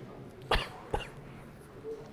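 A person coughing: one short cough about half a second in, followed by a briefer, sharper sound just under half a second later.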